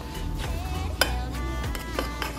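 Background music, with a fork stirring fish pieces in flour inside a metal saucepan and a sharp clink against the pan about a second in.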